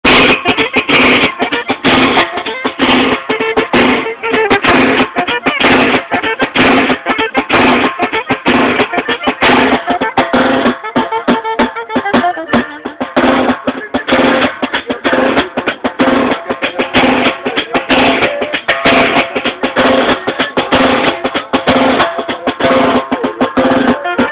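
Norteño band playing an instrumental passage: button accordion melody over a drum kit keeping a fast, steady beat with snare and cymbal strokes.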